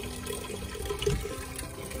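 Steady running, trickling water, as from the water circulating through a hydroponic growing system's pipes.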